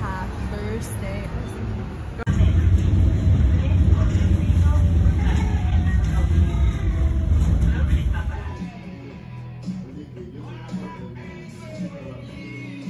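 Background music over voices, with a hard cut about two seconds in to the low, steady rumble of a moving train carriage, which drops away about eight seconds in.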